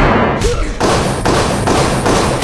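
Movie action-scene sound effects: a loud, unbroken run of heavy thuds and bangs from gunfire and a fight, with hits striking a metal shield.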